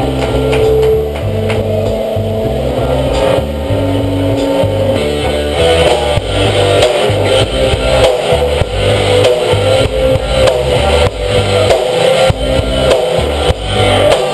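Live rock band playing loud: electric guitars holding sustained notes over bass and a drum kit, with the drum hits growing denser about halfway through.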